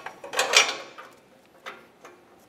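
Slotted O2 sensor socket being fitted over an exhaust oxygen sensor: a short metal scrape about half a second in, then a sharp click near the end.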